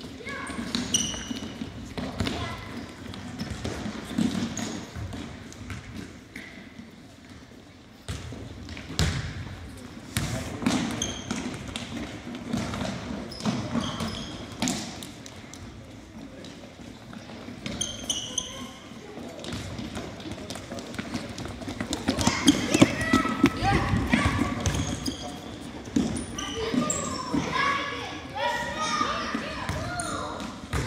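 Indoor soccer in a gymnasium: a ball being kicked and bouncing off the hardwood floor in scattered thuds, sneakers squeaking on the floor, and children's voices and shouts echoing in the hall, busiest near the end.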